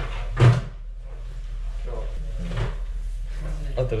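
Voices talking in the background over a steady low hum, with a single loud thump about half a second in.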